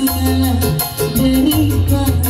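Live band music played loud through stage speakers: keyboard and a sliding melody line over heavy bass and a fast, steady percussion beat.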